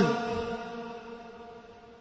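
A man's sermon voice dying away in a long echoing tail after the end of a phrase: a held, pitched ring that fades out over about a second and a half.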